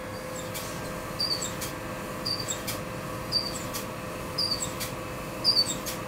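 Laser stencil cutter at work, cutting a stencil: a steady hum under a regular cycle, about once a second, of a sharp click followed by two short high chirps.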